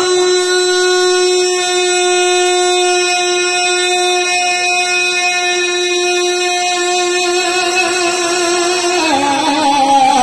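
A male naat reciter holds one long, steady sung note through a microphone and PA for about nine seconds. Near the end he drops in pitch and moves back into a melodic phrase.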